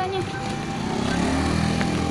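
A motor vehicle engine running on the street, growing steadily louder and rising slightly in pitch as it draws near.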